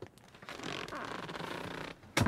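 Black vinyl seat upholstery creaking and rubbing as someone shifts their weight inside the car, with a click at the start and about a second and a half of steady rubbing.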